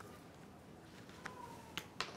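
A quiet room with a few faint, sharp clicks: one at the start and two more about a second and a half apart later on, with a faint thin whistle-like tone between the last two.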